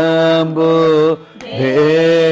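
A man singing a Carnatic vocal phrase on long held notes with wavering ornaments, with a short break for breath past halfway, after which the voice comes back on a lower note.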